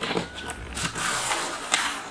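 Cardboard packaging and plastic wrap rustling and scraping as an inner cardboard tray is pulled out of a box, with a few sharp crackles about a second in and again near the end.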